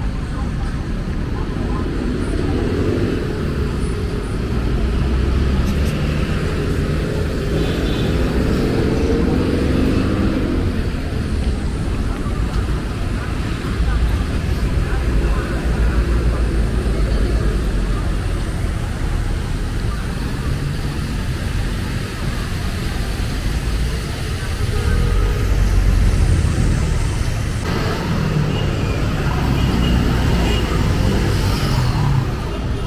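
Busy street traffic: cars and motorcycles passing with a steady low rumble of engines and tyres. A nearby vehicle's engine drone stands out over the first ten seconds or so.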